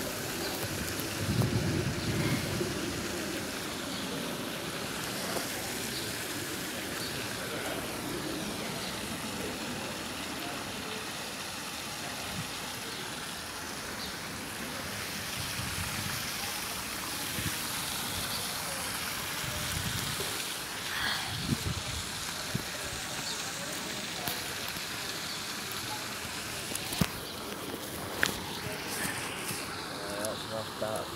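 Steady hiss of light rain falling outdoors, with a few low rumbles on the microphone near the start and about two-thirds of the way through.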